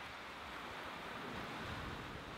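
Ocean surf washing over a rocky shore ledge: a steady, soft rush of water that swells slightly.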